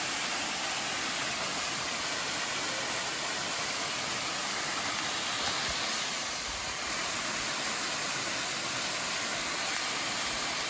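Small waterfall, not flowing much, falling steadily into its rocky plunge pool: an even, unbroken rush of water.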